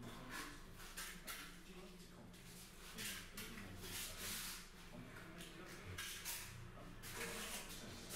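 Plastering trowel spreading the first coat of finish plaster over sand-and-cement render: a series of faint scraping strokes, about one or two a second.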